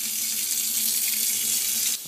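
Kitchen faucet running, a steady stream of water splashing into a stainless steel sink, cut off abruptly at the very end.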